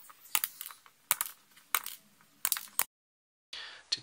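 Flush side cutters snipping the excess wire leads off phototransistors soldered into a small circuit board: a series of sharp clicks, some in quick pairs, over about three seconds, then the sound cuts out abruptly near the end.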